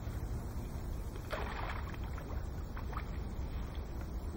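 Water splashing at a landing net held in the water: one longer splash about a second in, then a few short small splashes, over a steady low rumble of wind on the microphone.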